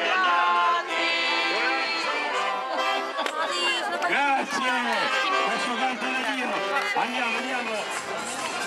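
Accordion music with held notes. From about three seconds in, people's voices and crowd chatter come in over it.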